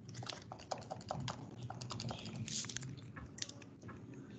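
Typing on a computer keyboard: an irregular run of key clicks over a faint low hum.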